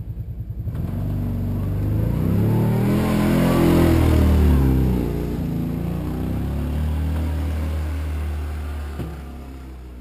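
ATV engine running as the four-wheeler drives through deep snow, with a pulsing putter at first, growing louder as it comes close and passes about four seconds in, then fading as it moves away.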